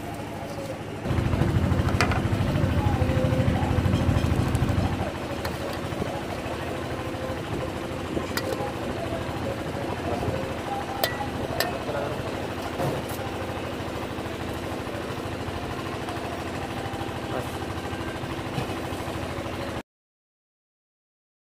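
Gas burner running under a wok of boiling chicken soup, loud and rough for the first few seconds, then dropping to a steadier, quieter noise broken by a few sharp clicks.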